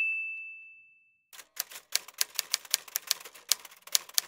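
Intro sound effect: a bell-like ding fading away over the first second, then a quick run of typewriter key clicks, several a second.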